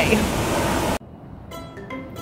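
Steady outdoor background noise with the tail of a voice, then an abrupt cut about a second in to light background music of plucked strings.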